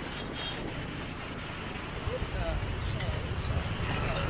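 Ride noise from a motor scooter in town traffic: a steady low rumble of engine and wind that grows louder about halfway through, with faint voices mixed in.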